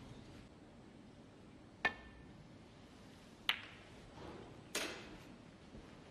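Snooker balls clicking during a shot: three sharp knocks, about a second and a half apart, the first with a short ring and the last softer and more drawn out.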